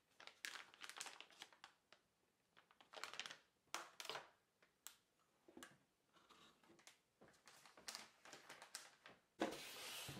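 Faint crinkling of a motherboard's anti-static plastic bag being handled, in short scattered rustles with quiet gaps between them.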